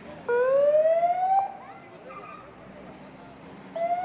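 Ambulance siren sounding in rising whoops: one loud sweep upward lasting about a second near the start, and a second sweep beginning just before the end.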